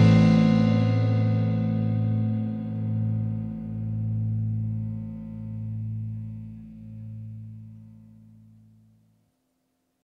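The song's final guitar chord ringing out, swelling and ebbing slowly as it fades away, dying out about nine seconds in.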